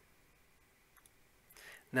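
Near silence with room tone, a faint single mouse click about a second in, then a breath and a man starting to speak at the very end.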